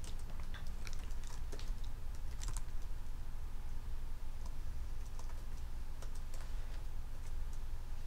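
Computer keyboard keystrokes: scattered, irregular taps in small clusters while code is edited in a text editor, over a steady low hum.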